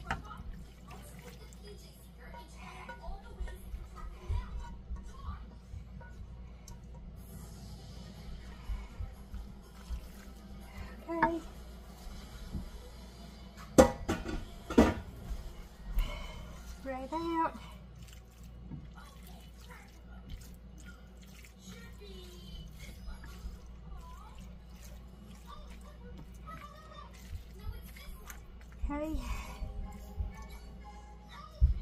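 Plastic spatula scraping a creamy noodle casserole out of a nonstick skillet and spreading it in a ceramic baking dish: soft wet scraping and squelching, with two sharp knocks about halfway through.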